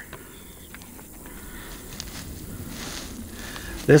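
Faint clicks and light handling of the plastic foam-cannon bottle on a cordless power washer, with a soft brief hiss near the middle over a low steady outdoor background.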